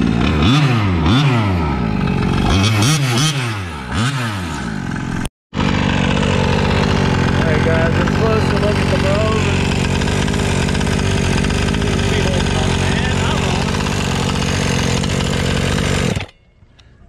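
Bartolone-modified Rovan 45cc two-stroke engine with a tuned expansion pipe in a Losi 1/5-scale RC monster truck, revving up and down in quick repeated sweeps for about five seconds. After a brief dropout it runs loud and steady at a constant speed.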